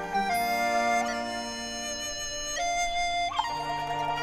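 Chinese bamboo dizi flute playing a slow melody of held notes over a Chinese traditional ensemble with bowed strings. About three seconds in, the flute slides upward into a new note.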